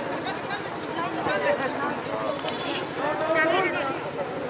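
A voice talking continuously, as in live match commentary, over a steady low hum.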